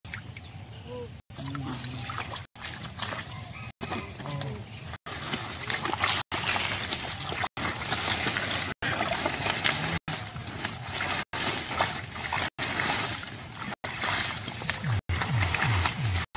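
Splashing and sloshing of shallow muddy pond water with the rustle of water hyacinth being pulled and pushed aside by hand, a steady noisy wash through most of it. The sound is broken by brief silent dropouts about every second and a quarter, and a voice is heard near the end.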